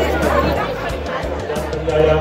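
Several women chattering and greeting each other excitedly over background music with a steady low bass, in a crowded hall.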